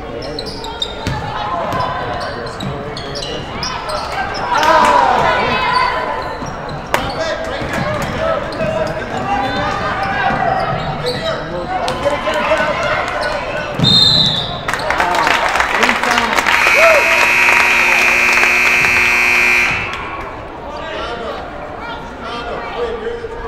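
Basketball game in a gym hall: players and spectators calling out, sneaker squeaks and ball bounces on the hardwood. A short high whistle blast just before 14 s, then the sound swells and a steady buzzer tone is held for about three seconds before cutting off, as play stops.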